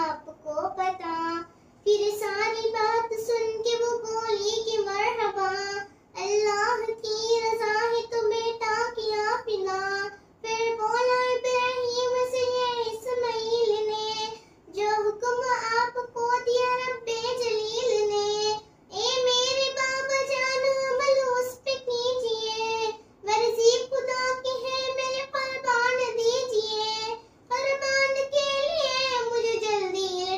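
A young girl singing an Urdu devotional kalaam alone, with no accompaniment, in drawn-out melodic phrases broken by short pauses for breath.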